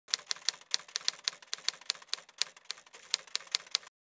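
Typewriter keystroke sound effect: a run of sharp, slightly uneven clicks, about five a second, as on-screen text types out. It cuts off suddenly near the end.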